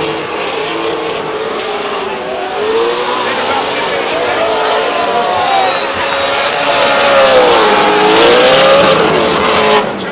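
Two drift cars' engines revving up and down as they slide through a turn in tandem, with tyres squealing and hissing. The sound grows louder in the second half as the cars come nearer.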